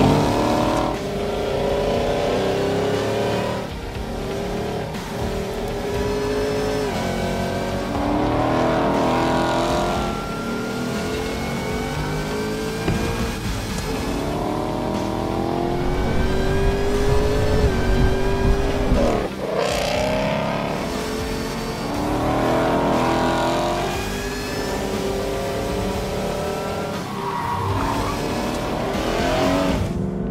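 Shelby Super Snake Mustang's supercharged V8 accelerating hard, its pitch rising again and again as it revs up through the gears, dropping back at each shift.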